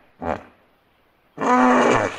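Hippopotamus vocalising: one short grunt just after the start, then about one and a half seconds in a much louder, rough, drawn-out call as it charges open-mouthed through the water.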